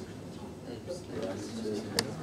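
Low, indistinct voices murmuring, with a single sharp click at the very end.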